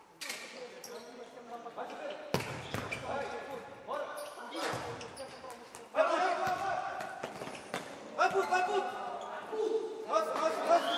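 Futsal ball kicked and bouncing on a sports-hall court, with sharp impacts a couple of times, under players' shouts that echo in the hall and grow louder after the middle.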